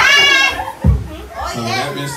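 A loud, high-pitched shriek of excitement rising from the guests at a surprise engagement announcement, then a short deep thump just under a second in, and voices talking.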